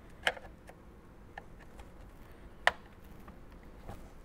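A handful of faint, sharp plastic clicks as a flathead screwdriver pries at the locking tabs of a dashboard air vent in its plastic trim bezel; the loudest click comes a little under three seconds in.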